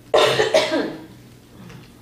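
A man coughing: one short burst near the start.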